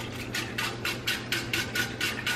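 Metal wire whisk beating and scraping around a large skillet of simmering beef broth sauce, a quick even rhythm of about six or seven clicks a second. A steady low hum runs underneath.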